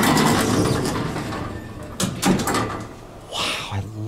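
Vintage Otis elevator's car and hoistway doors sliding open, a rumbling run that fades over about two seconds, followed by a couple of sharp clicks.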